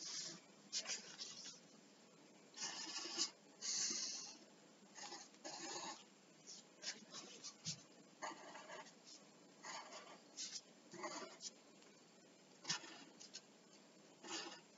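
Graphite pencil scratching on paper in irregular strokes, mostly short with a few longer ones, faint.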